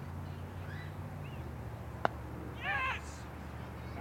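Cricket bat striking the ball: one sharp crack about halfway through, followed about half a second later by a short high-pitched shout.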